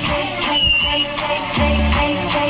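Loud live pop dance music through a stage PA, with a steady beat and no singing: an instrumental break. A deep bass note sounds near the end.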